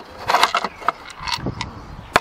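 Plastic cordless-drill battery casings being picked up and handled on a table: a handful of light knocks and rattles.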